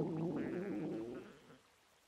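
A single low, gurgling rumble from a resting cartoon giant, loudest at the start and fading out over about a second and a half.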